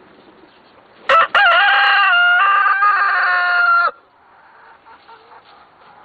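A rooster crowing once, about a second in: a short first note, then a long held call that cuts off after almost three seconds.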